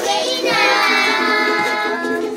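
A group of children singing together, one voice holding a long note through the middle.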